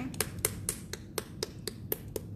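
A quick, even run of sharp clicks or taps, about four a second.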